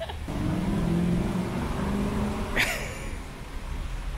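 A motor vehicle's engine droning past, swelling and then fading over about two seconds, with one sharp click near the three-second mark.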